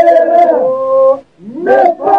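Men's group singing Albanian Lab iso-polyphony: several voices hold long notes together over a low drone. About a second and a half in there is a short break for breath, then the voices slide upward into the next held chord.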